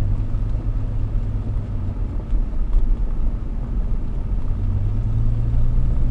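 Engine and road noise of a classic car heard from inside the cabin while driving: a steady low drone that eases a little about two seconds in and strengthens again from about five seconds in.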